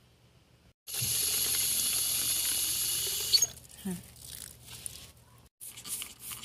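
A steady hiss for about two and a half seconds that cuts off with a click. Near the end, a plastic trigger spray bottle starts spritzing in short repeated strokes.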